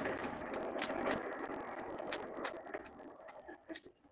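Lazy Susan turntable spun by hand under a paint-pour canvas: its bearing gives a rolling rumble with small clicks that dies away as the spin slows.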